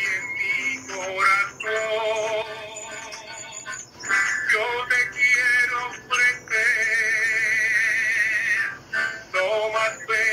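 A man singing a hymn to his own acoustic guitar, in phrases with short breaks between them and a wavering vibrato on the long held notes, heard through a video call's compressed audio.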